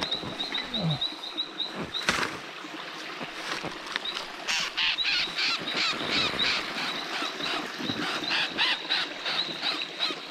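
Night chorus of small calling animals: a run of short, high chirps about five a second, joined by a denser cluster of calls from about four seconds in. A sharp rustle of handling sounds about two seconds in.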